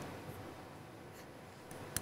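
Faint steady hiss with a few soft clicks, and one sharp click at the very end.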